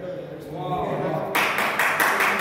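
A quiet lull, then a voice with rapid, rhythmic sharp hits joining about one and a half seconds in.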